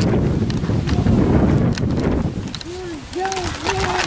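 Wind buffeting the camera's microphone, with handling rustle as the camera is swung around. A few short, low, rising-and-falling voiced notes come in near the end.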